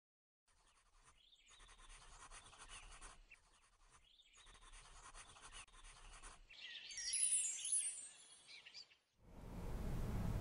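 Faint pencil-on-paper scribbling in two spells of about two seconds each. Then a short, louder, bright flourish with sweeping pitches about seven seconds in, and steady room hiss comes in near the end.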